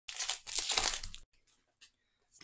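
Crinkling and rustling of a foil booster pack wrapper and handled trading cards for just over a second, followed by a couple of faint ticks.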